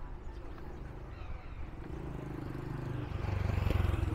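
A motorcycle engine passing close on a street, getting louder over the last two seconds, over steady street background noise.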